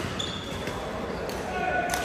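Badminton play echoing in a large sports hall: a couple of sharp racket strikes on the shuttlecock, the loudest near the end, with short squeaks of court shoes on the floor and the chatter of players in the background.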